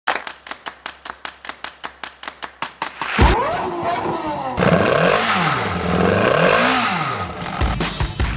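A fast, even run of ticks, about seven a second. About three seconds in, a Lamborghini sports car's engine starts and then revs up and down twice through its exhaust.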